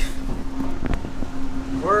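Wind buffeting the microphone over a steady machine hum, with a single sharp click about a second in.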